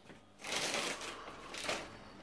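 Plastic shopping bags rustling in a long crinkly burst about half a second in, then a shorter one near the end, as the bags are searched through by hand.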